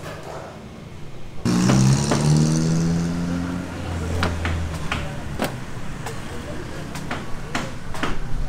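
A motor vehicle engine comes in suddenly about a second and a half in, its pitch sliding slowly downward as it fades over the next few seconds. It is followed by a few sharp, separate knocks.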